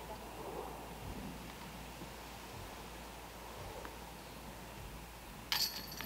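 Faint outdoor ambience. About five and a half seconds in, a short metallic jingle: a golf disc striking the chains of a disc golf basket on a putt.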